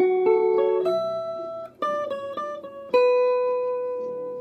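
Guitar playing a requinto melody of quick single plucked notes in two short runs with a brief gap between them, ending on one note that is held and rings out from about three seconds in.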